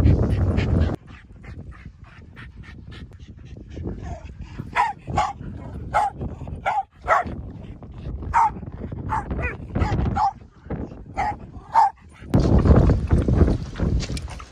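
A dog barking in short, high yaps, about a dozen over several seconds, during rough-and-tumble play. A low rumble fills the first second and returns near the end.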